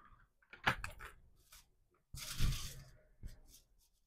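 Aluminium foil sheet crinkling as it is handled and turned on a clipboard. A couple of light clicks come first, and a short rustle about two seconds in is the loudest.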